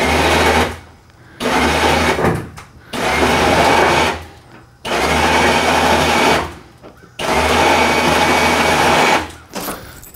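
Trailer-mounted electric winch running in five short bursts of one to two seconds each, with brief pauses between them. It is paying out cable as it lowers a car down the loading ramp in stages.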